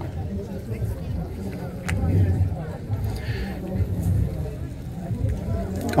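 Indistinct murmur of voices over a low, steady room rumble, with a single light click about two seconds in.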